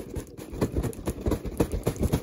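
Cardboard box being handled: a string of irregular soft knocks and scrapes, about three or four a second.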